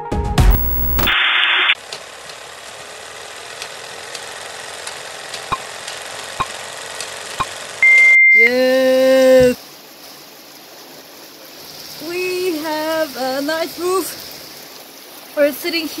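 Old-film countdown leader sound effect: a steady hiss with a few faint clicks, ending in a single short high beep about eight seconds in as the count reaches one. A loud held pitched sound follows for about a second, then quieter background with a voice near the end.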